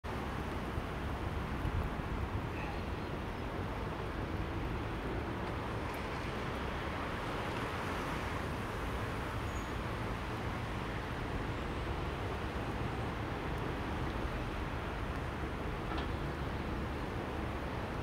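Steady outdoor background noise, a low rumble with hiss, as heard through a handheld phone's microphone, with a few faint clicks as the phone is handled.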